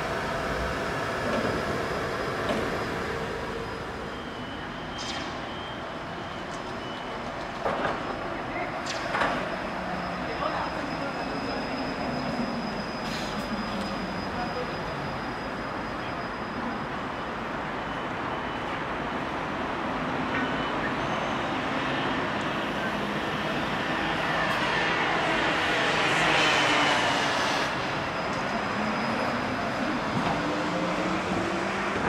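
Electric trolleybus on overhead wires, its electric drive whining in pitch that glides down in the middle and rises again toward the end, as the bus slows and then pulls away. Street noise underneath, and two sharp clicks about eight and nine seconds in.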